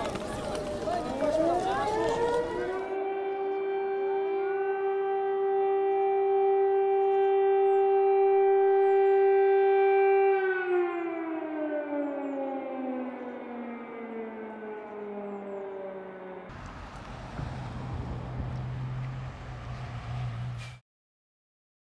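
Air-raid siren winding up to a steady wail, holding one pitch for several seconds, then winding down in a slow falling glide. Crowd noise lies under its start and stops abruptly about three seconds in; after the siren fades, the last few seconds hold street noise with a low engine hum.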